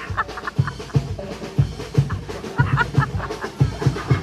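Parade band music: drums beating a steady marching beat, with short repeated higher melody notes above it.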